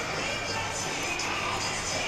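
Arena background: a steady crowd murmur with music playing in the hall.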